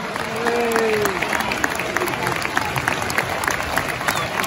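Football stadium crowd applauding, many hands clapping at once, with a brief falling shout near the start.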